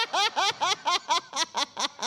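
A woman laughing hard: a quick, even run of pitched 'ha' sounds, about five a second, that stops just before the end.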